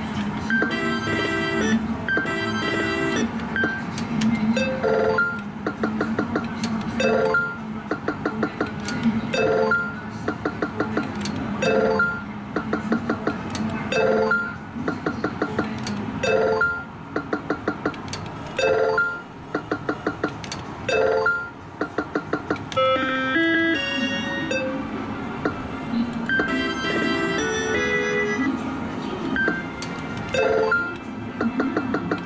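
Electronic beeps and jingles from a Sigma Joker Panic! video poker medal machine. A short chime repeats about every two seconds, each time followed by a quick run of ticking beeps, and different melodic tones come in past the middle. A steady arcade hum runs underneath.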